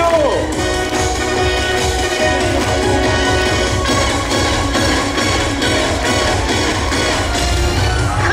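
Loud upbeat dance music with a steady beat, played over a live stage show's sound system.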